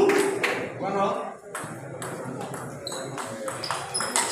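Table tennis rally: the ball clicks sharply off the paddles and bounces on the table, about six hits in quick, uneven succession. Voices are heard in the first second.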